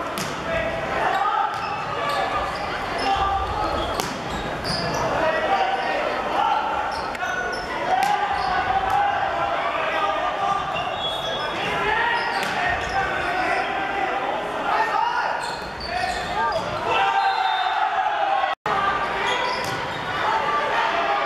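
A volleyball being served and struck during a rally, its sharp smacks every few seconds among players' and spectators' shouting and chatter, echoing in a large sports hall. The sound drops out for a split second near the end.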